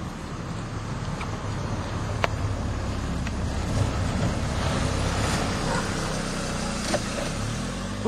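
Car engine running and tyre noise as the car drives along, its pitch wavering slightly; the low rumble drops away near the end.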